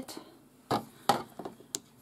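Small scissors snipping embroidery thread: a few short, light clicks, the loudest about two-thirds of a second in.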